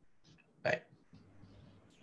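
A man's voice saying a single short "bye" about half a second in; otherwise near silence.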